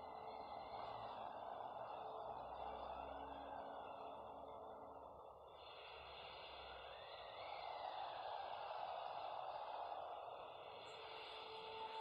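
Faint, steady rushing ambience with faint held high tones, dipping briefly around the middle and swelling again in the second half.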